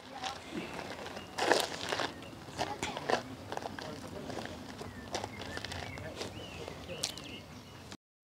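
Quiet outdoor background: faint, distant voices of people on the path and scattered light crunches, like footsteps on gravel.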